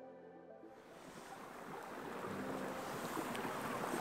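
Soft background music dies away in the first second. Then a steady rushing of wind and running stream water fades in and slowly grows louder.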